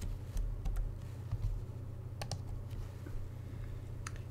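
A handful of faint, scattered computer key clicks over a steady low electrical hum.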